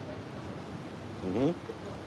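Steady background hiss of open-air ambience, with one short voiced sound, bending in pitch, about a second and a half in.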